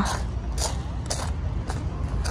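Footsteps crunching on coarse crushed dolomite sand, three steps a little over half a second apart, over a low steady rumble.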